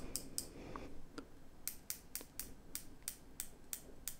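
Light ratcheting clicks of the Squale Super-Squale's 120-click unidirectional dive-watch bezel being turned by hand: a few scattered clicks at first, then an even run of about six clicks a second in the second half.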